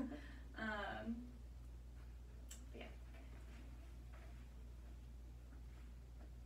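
A woman's brief laugh about a second in, then a quiet small room with a steady low hum and a few faint clicks and rustles.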